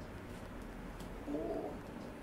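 A short, muffled hum-like moan from a woman about a second and a half in, under strong pressure on her buttock muscles during a painful massage.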